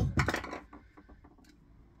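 A few sharp metallic clunks and clinks, loudest right at the start, as a set of Honda CBR600 individual throttle bodies is picked up and handled, followed by a few faint clicks.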